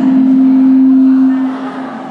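Microphone feedback through the hall's sound system: one steady low-pitched ring that holds for about a second and a half, then fades away.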